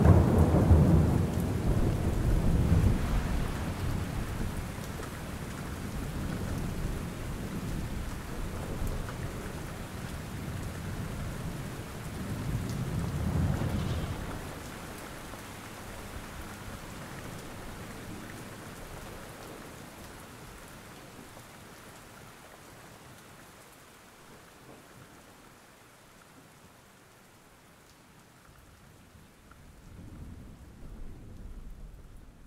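Steady rain with rolls of thunder. A loud roll at the start dies away over a few seconds, a second roll swells about 13 seconds in, and then the rain slowly fades down.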